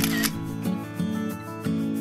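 A camera shutter click right at the start, about a quarter second long, as a selfie is snapped, over steady background music.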